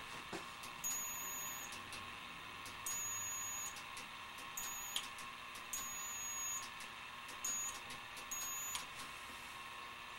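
High-voltage supply driving an ion lifter in a near-vacuum chamber, giving a high-pitched whine with a fainter tone an octave above. The whine cuts in and out in short, irregular bursts, punctuated by sharp clicks, as the discharge at the lifter flares and drops out. A steady hum runs underneath.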